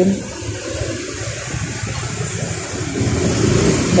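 A motorcycle running at low speed under a steady rushing noise, which grows louder about three seconds in.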